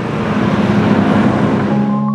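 A loud rushing whoosh used as an edit transition, its hiss fading out in the second half as sustained music chords come in near the end.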